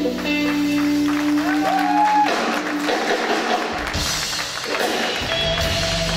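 A live band playing, with guitar prominent and held notes; the bass drops out for about a second and a half midway.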